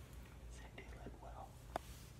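Faint whispering from a man close to someone's ear, with one short click near the end.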